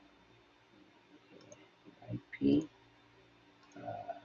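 Quiet room tone with a few faint clicks, then a man's short 'uh' a little past halfway.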